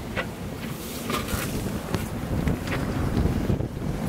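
Storm wind of 25 to 35 knots buffeting the microphone on a small sailboat's deck, a steady rumbling rush over the sea, with a few brief sharp clicks.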